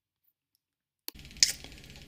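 Dead silence for about a second, then a click as room sound cuts in, a sharper knock just after, and steady faint room noise with a low hum. No piano tones from the piezo speaker are heard.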